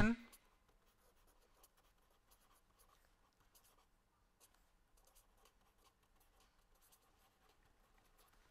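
Faint scratching of a pen writing on paper in short, scattered strokes.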